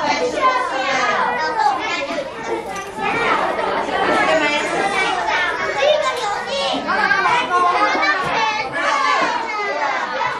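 Many young children talking and calling out over one another at once, a continuous busy chatter of overlapping voices in a classroom.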